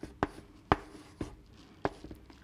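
Chalk writing on a chalkboard: four sharp taps of the chalk against the board about half a second apart, with light scratching between them as a number is written.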